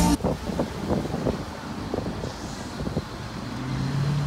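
Car park ambience of car and traffic noise, with scattered low knocks, after music cuts off at the very start. A steady low hum comes in near the end.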